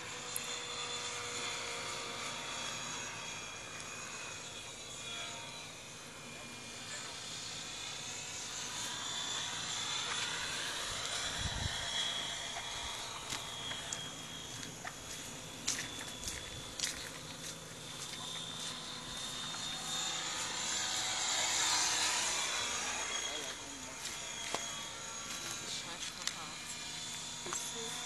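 Radio-controlled model aircraft flying, its high motor whine gliding up and down in pitch as it passes back and forth.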